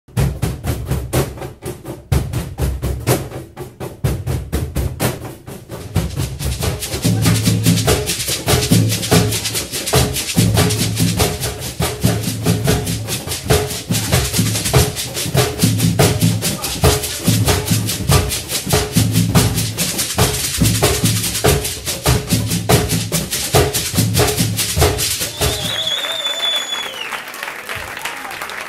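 A group of cajons played together with a surdo, dense sharp slaps over a repeating deep bass-drum pattern. The drumming stops shortly before the end.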